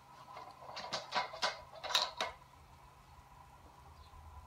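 Stainless-steel end-cap compression tool being released and lifted off the end of a membrane pressure vessel: a handful of light metal clicks and scrapes over the first two seconds or so.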